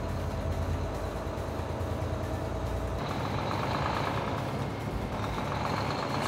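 Volvo D13 diesel engine of a heavy truck pulling at low revs in 7th gear as the I-Shift gearbox works up through the gears, heard as a steady deep rumble. About three seconds in the deepest rumble drops away and a lighter, even engine note carries on.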